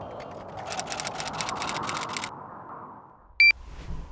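Low, steady background noise with a rapid run of sharp clicks, about seven a second, lasting some two seconds. Near the end comes one short, loud, high electronic beep.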